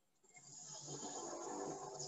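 A man's faint, drawn-out hum, starting about half a second in and holding one low pitch.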